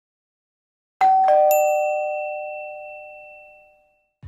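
Two-note ding-dong chime, a higher note then a lower one struck in quick succession, with a bright high ping just after, ringing out and fading away over about three seconds.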